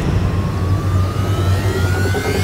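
Dramatic soundtrack effect: a steady low rumbling drone with a thin tone that enters just after the start and slowly rises in pitch, building suspense.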